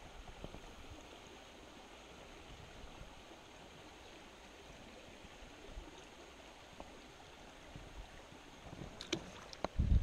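Small stream running over a rocky bed: a steady, soft rush of water, with faint clicks from hands handling a fish. Near the end come a few sharper clicks and a low bump on the microphone.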